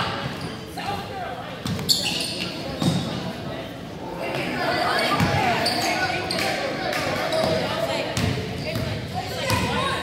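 Basketball bouncing on a hardwood gym floor during play, a few sharp knocks among the game noise, with spectators' voices echoing through the large gym.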